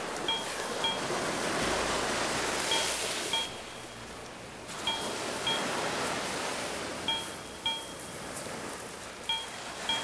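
Surf washing onto a beach, with a pair of short, high pings about half a second apart repeating roughly every two seconds.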